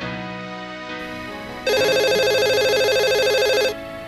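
A telephone rings once, a trilling ring of about two seconds that starts a little under two seconds in, over soft background music.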